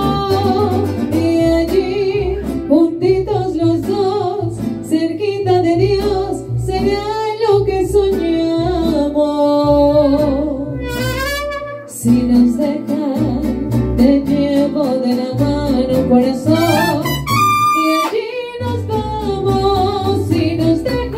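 Mariachi band playing a song with singing: melody lines over a steady pulsing bass-and-guitar rhythm, with a brief drop in loudness about midway through.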